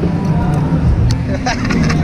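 Steady low rumble of an idling Sea-Doo jet ski engine, with short splashes of water around a rider swimming beside it between about one and two seconds in.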